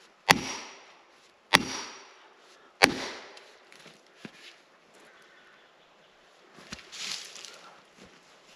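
Three sharp blows, about a second and a quarter apart, driving plastic felling wedges into the back cut of a standing pine to push the tree over. Each blow is a crack with a short ring. Softer knocks and a brief rustle follow near the end.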